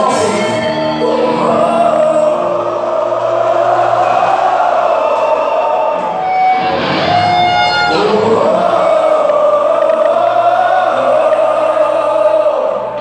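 Heavy metal band playing live with singing, heard from among the audience in a large concert hall.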